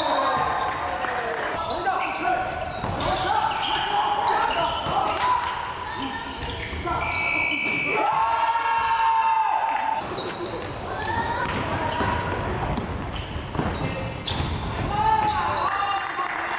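Live basketball game in a gymnasium: a ball bouncing on the wooden court with players' shouts and calls throughout. One longer held call comes about eight seconds in.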